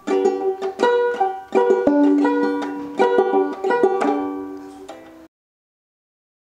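Banjo ukulele (banjolele) strummed in a short run of bright chords, each strum ringing briefly before the next. It cuts off suddenly a little past five seconds in.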